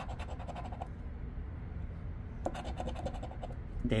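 A coin scratching the latex coating off a scratch-off lottery ticket, in two bursts of quick rasping strokes: one at the start and another from about two and a half seconds in.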